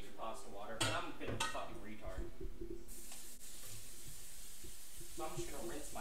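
A kitchen tap is turned on about three seconds in, and water runs steadily onto pasta held in a colander under the faucet to rinse it.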